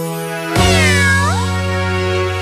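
Closing chord of a children's song with a cartoon cat's meow, a single cry that falls and then swoops up, about half a second in, over the held music.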